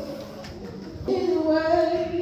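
Singing: a high voice comes in about a second in on a long held note, over a softer steady tone.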